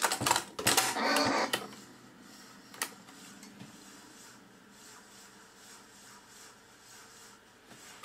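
Cassette deck of a Goodmans Quadro 900 portable TV/radio/cassette fast-forwarding a tape: a faint steady whir, with one sharp click about three seconds in. It is winding extremely slowly, which the owner puts down to his cassette rather than the deck. The first second and a half holds a louder pitched sound.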